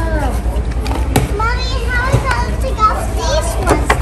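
A young child's excited wordless vocalizing with high, sliding squeals, over a steady low hum, with a few sharp clicks and rustles from a cardboard box being handled.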